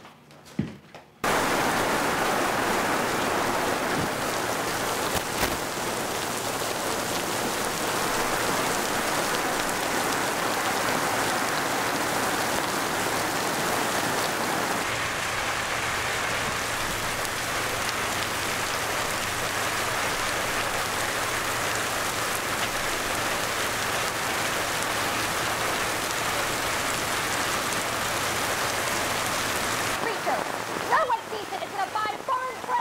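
Heavy artificial rain from a film-set rain rig pouring down onto the set, a dense steady hiss that starts abruptly about a second in.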